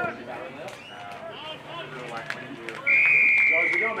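An umpire's whistle blows one long blast of about a second near the end, a single steady note sagging slightly in pitch. Before it come indistinct shouts and voices and a couple of sharp knocks.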